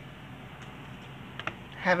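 Quiet room tone with a couple of faint, short clicks, then a woman's voice starts speaking just before the end.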